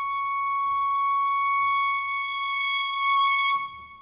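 Contemporary orchestral music with live electronics: a single high note held steady with slight vibrato, cut off sharply about three and a half seconds in, leaving a short fading ring.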